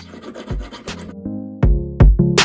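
A hand file rasping across the edge of a gold ring, over background music with a steady beat. The filing stops a little past halfway, leaving the music, whose drum hits grow louder near the end.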